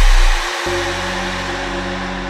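Electronic dance music in a breakdown without vocals: a deep held bass note cuts off about half a second in, leaving a quieter sustained synth chord over a steady wash of noise.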